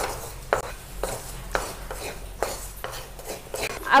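Wooden spatula knocking and scraping against a pan while dry-roasted dried fish and shallots are stirred: a handful of separate knocks, roughly half a second to a second apart.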